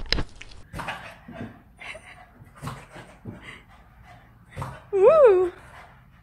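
French bulldog vocalising: a string of short grumbling yips, then near the end one loud whine that rises and falls in pitch over about half a second.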